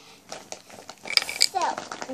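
Rustling and handling of a gift bag as it is opened, with a few short clicky strokes about a second in and a brief child's voice near the end.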